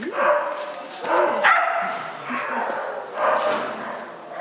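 A dog barking several times in short separate barks, echoing in a large hall, as it runs an agility course.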